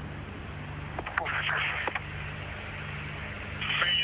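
Steady hiss and a low hum on a radio communications feed, with faint, indistinct voice chatter about a second in.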